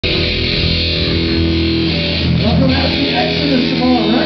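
Live band amplified through a PA in a club: electric guitar and bass hold long, ringing notes. A voice through the microphone comes in about halfway through.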